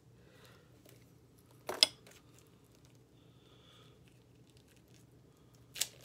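Hands picking and prying at a plastic DVD case and its wrapping: faint scratching, a sharp plastic click a little under two seconds in, and another short click near the end.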